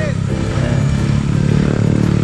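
An engine running steadily with a low, even hum, with faint voices in the background.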